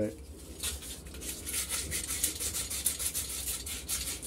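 Abrasive paper rubbed back and forth over the end of a copper gas pipe, quick even scraping strokes starting about half a second in, cleaning the pipe end for a compression olive.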